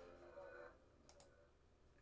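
Near silence: room tone, with two faint clicks a little after one second in.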